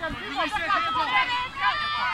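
Several voices shouting and calling over one another on a rugby pitch, mostly high-pitched women's voices.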